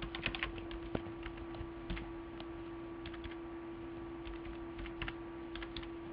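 Typing on a computer keyboard: irregular runs of keystrokes, quickest in the first half second, then sparser. A steady low electrical hum runs underneath.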